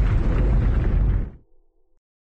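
Explosion of a strike drone's warhead hitting a ground target: one sudden blast with a heavy low rumble that holds for over a second, then dies away quickly.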